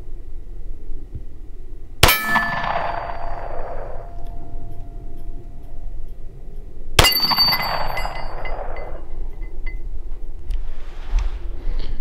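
Two pistol shots about five seconds apart. Each is followed by the clang of a steel plate target that keeps ringing for a couple of seconds.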